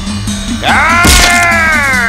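Film-score music with a steady pulsing beat. About half a second in, a loud drawn-out wailing cry rises, then slowly falls in pitch, with a sharp hit near its peak.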